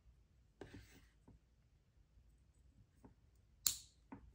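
Small handling sounds of wires being worked into a lever-type push-in wire connector: a brief rustle about half a second in and a few faint ticks, then one sharp click shortly before the end as a connector lever snaps shut.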